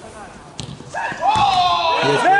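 A single ball impact about half a second in. From about a second in, a man's loud, long drawn-out shout follows, its pitch bending up and down: the call of a goal being scored.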